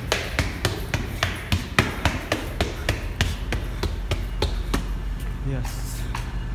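Quick footsteps hurrying down concrete stairs, about three to four steps a second, over a steady low rumble.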